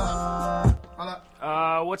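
Hip-hop track with a held note of electronically processed, vocoder-style singing over deep bass and a kick drum about twice a second. It cuts off about three-quarters of a second in, and a man's voice starts near the end.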